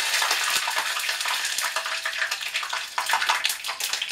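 Adult cicadas deep-frying in hot oil: a sizzling hiss full of dense, irregular crackling and popping as the oil spatters. The cook suspects the oil is too hot or the insects were not dried well enough.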